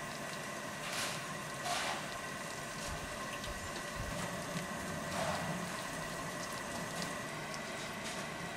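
A BR Standard 9F steam locomotive standing in steam: a steady hiss with faint whistling tones, water trickling from its dripping overflow pipes, and brief louder rushes of steam about a second in, just before two seconds and after five seconds.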